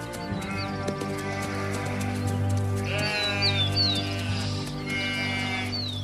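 A sheep bleating, with its loudest wavering call about three seconds in, over background music of steady held tones.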